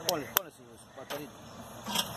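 Faint voices talking in the background, with one sharp click about half a second in.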